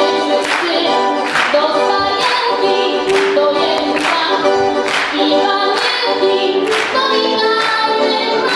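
A woman sings a Polish Christmas carol to piano accordion accompaniment. A sharp beat recurs about once a second under the sustained melody.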